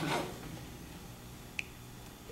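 A cough fading out at the very start, then low room tone with a single short, sharp click about one and a half seconds in.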